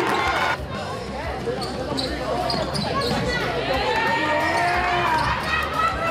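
A basketball bouncing on a hardwood gym floor as a player dribbles, with players' and spectators' voices calling out around the gym.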